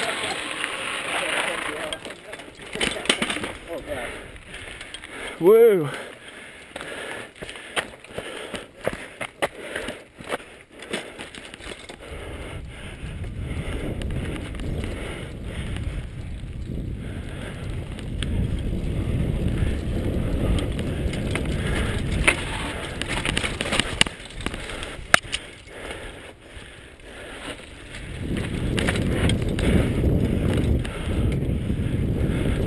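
Mountain bike riding down a dirt forest trail: tyre noise and sharp rattling clicks of the bike over rough ground, with wind rumbling on the microphone, heavier in the second half. A short shout sliding down in pitch about five and a half seconds in.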